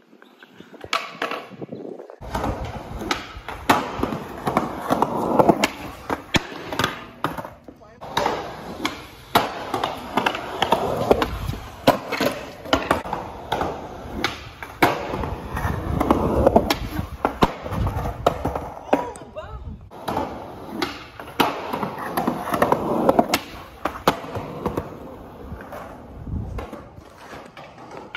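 Skateboard wheels rolling on concrete, with many sharp clacks of the board popping, landing and hitting the ground.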